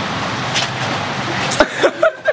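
Steady hiss of heavy rain, with a knock and a brief burst of voice near the end.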